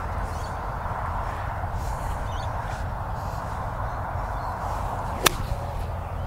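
A lead-weighted Bridgestone blade iron strikes a golf ball once, a single sharp click about five seconds in, over steady background hiss. The ball is struck right in the middle of the blade.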